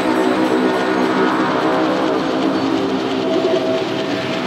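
Beatless intro of a psytrance track: a sustained, many-toned synth chord over a hiss, with a higher held tone joining about three seconds in.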